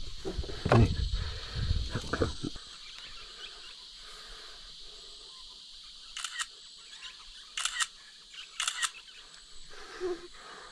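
Camera shutter sound, three quick double clicks a second or so apart, as photos are taken of a caught fish.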